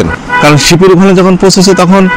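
A man speaking in Bengali, one continuous stretch of talk with a short pause just before half a second in.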